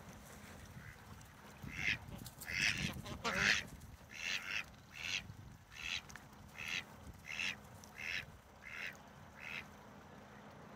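Ducks quacking: about a dozen evenly spaced quacks, starting about two seconds in, loudest early on and growing fainter toward the end.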